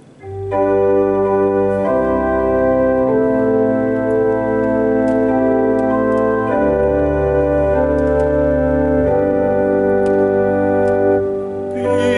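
Viscount digital church organ playing a slow introduction of sustained chords over held bass notes, entering about a quarter second in. The bass note changes every two or three seconds.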